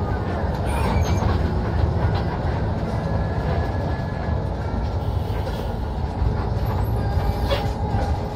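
Steady cabin noise inside a moving coach bus: engine running and tyre and road noise, with rattling of the cabin fittings.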